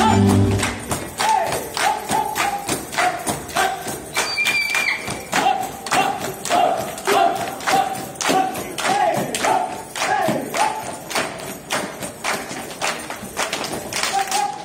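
Folk dancers clapping and stamping in a steady rhythm, about two to three sharp hits a second, with short rhythmic shouts, after the band music stops within the first second. A brief high whistle sounds about four seconds in.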